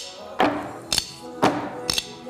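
Drumsticks clacking together overhead in sharp, evenly spaced strikes about twice a second, over background music with a steady beat.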